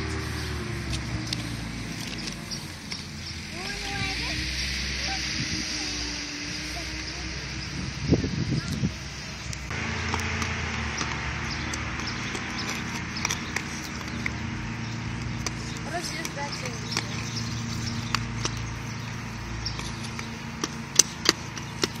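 Inline skate wheels rolling and clicking on asphalt under a steady rushing noise, with faint children's voices now and then.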